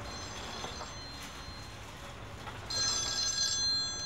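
Mobile phone ringing with an electronic ringtone of steady high tones. The ringing is faint at first and grows much louder a little under three seconds in.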